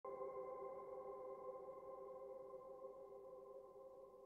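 A faint, held electronic chord of several steady tones that slowly fades away.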